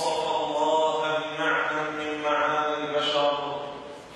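A man's voice chanting an Arabic religious recitation into a microphone, melodic and drawn out, with long held notes that bend slowly in pitch.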